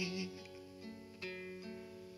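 Soft acoustic guitar accompaniment of a Vietnamese ballad in the gap between sung lines: held chords ringing, with a couple of new notes plucked in the second half.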